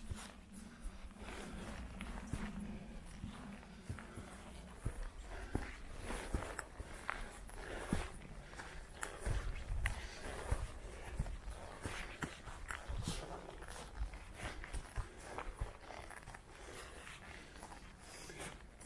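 A hiker's footsteps walking up a grassy, stony slope: soft, irregular steps, with a low rumble underneath.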